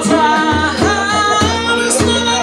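Male voice singing long held notes over a strummed guitar in a steady rhythm, played live.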